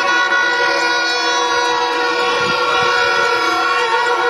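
Several horns blown together in a steady, unbroken blare at a number of different pitches, over crowd noise.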